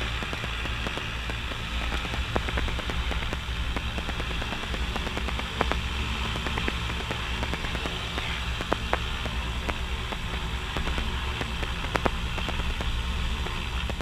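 Piper Navajo's twin piston engines heard from inside the cockpit, a steady low drone while the aircraft taxis, with a few light clicks now and then.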